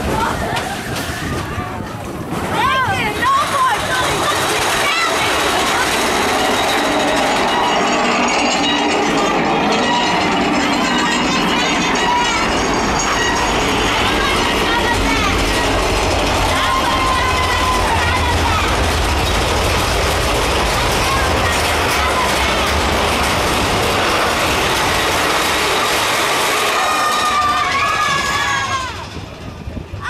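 Big Thunder Mountain Railroad mine-train roller coaster running along its track through a rock tunnel, a steady rattling rumble with a deeper low rumble through the middle. Riders shout and cheer over it near the start and again near the end.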